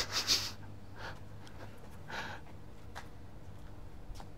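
A person's short breathy exhales, one at the start and another about two seconds in, over a faint steady low hum.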